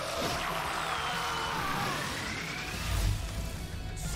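Animated fight-scene soundtrack: background music with a rising whine-like sound effect through the middle and a low rumble building near the end, as the fighter powers up in flames and swings a blazing sword.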